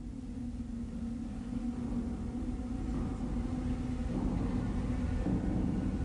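Low rumbling drone opening an industrial-metal track, fading in from silence and growing steadily louder, with a steady low tone held through it.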